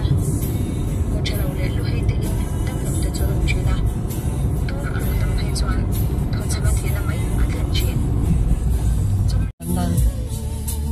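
Steady road and engine rumble inside a moving car on a highway, under music and voices. It drops out for an instant near the end.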